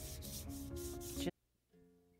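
A hand rubbing chalk pastel into paper to blend the base layer. The quick back-and-forth strokes come about five a second and cut off suddenly about a second and a quarter in.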